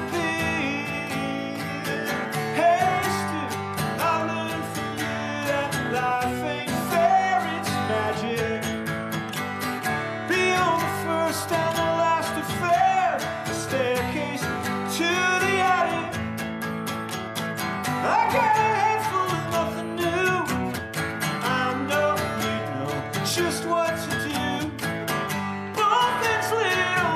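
A man singing a slow folk song while accompanying himself on an acoustic guitar.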